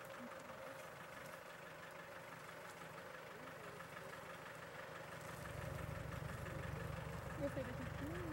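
Small stationary engine of a motorized crop sprayer running steadily at a distance, faint. A low rumble joins it past the middle.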